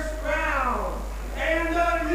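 A narrating voice speaking in fairly high, gliding pitch, with short pauses between phrases.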